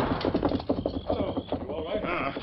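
Galloping horse hoofbeats, a radio-drama sound effect: a fast run of irregular clattering strokes.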